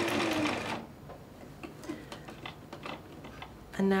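A bernette London 5 sewing machine runs a short burst of straight stitches in place to lock the threads at the end of sewing on a button, with the feed dogs lowered so the fabric does not move. It stops about a second in, leaving only faint ticks.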